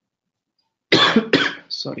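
A person coughs twice, loudly and about half a second apart, then says "sorry".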